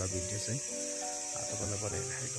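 Insect chorus, a steady high-pitched drone with a fast, even pulsing at its top, carrying on without a break.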